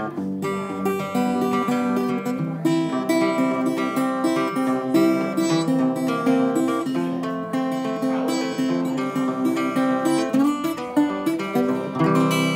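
A roughly 160-year-old romantic-style parlor guitar, small and ladder-braced with hide glue, being played as a continuous run of plucked notes and chords.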